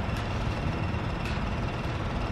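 A steady low rumble with a faint thin high tone running above it, and two soft ticks, one just after the start and one past the middle.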